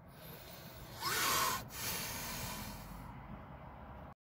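A phone being handled close to its microphone: a short rustle about a second in, then softer rubbing.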